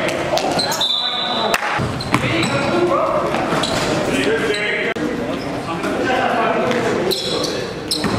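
Indoor basketball game in a gym hall: players' voices calling over a basketball bouncing on the floor, all echoing in the large room. A brief high squeal sounds about a second in and again near the end.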